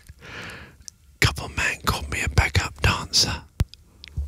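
A man whispering rap lyrics right into a studio microphone, ASMR-style. A breathy hiss comes first, then about two seconds of quick whispered words with lip and mouth clicks, and one sharp click near the end.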